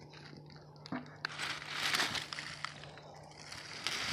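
Dry leaves, grass and plant debris crunching and rustling, starting about a second in and carrying on as a dense crackle.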